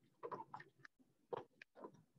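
Faint rustling and a few soft crinkles of paper pages being flipped over in a ring-bound picture booklet.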